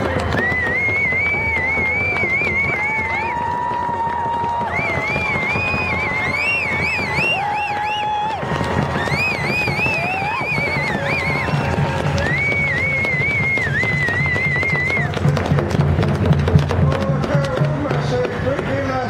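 A group of voices giving long, high, wavering ceremonial cries in four drawn-out phrases of about three seconds each, some voices holding lower notes beneath, over the murmur of a large crowd.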